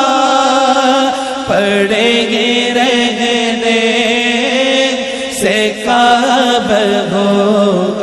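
A naat sung in Urdu by a solo male voice in slow, drawn-out phrases, with wavering, ornamented held notes over a steady low drone.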